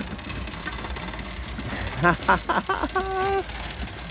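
Small steampunk vehicle pulling away and driving along a dirt path, a low steady rumble. About halfway through, brief voices or laughter, then a short held pitched tone.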